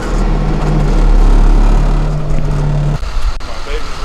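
Yard truck's engine running steadily, heard loud from inside the cab while driving, its pitch stepping up slightly about two seconds in. It cuts off suddenly about three seconds in.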